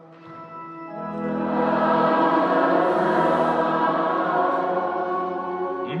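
Many voices singing a sung liturgical response together in a church, swelling in on held notes about a second in. A lone man's chanting voice takes over at the very end.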